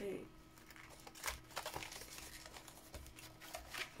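Paper and card rustling: a greeting card and envelope being slid out of a paper pocket and the pages of a spiral-bound card book being turned, in a string of short, quiet rustles.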